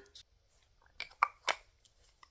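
A body mist pump-spray bottle being sprayed: a few short, faint spritzes and clicks around the middle of an otherwise quiet stretch.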